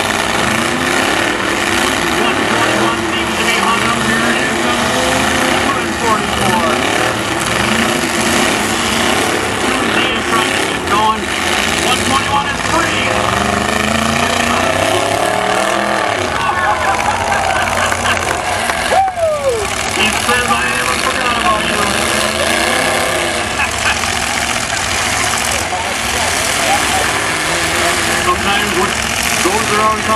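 Engines of full-size demolition derby pickup trucks running and revving, rising and falling in pitch as the tangled trucks strain against each other, with one engine revving up and dropping off about two-thirds of the way through. Crowd voices run underneath.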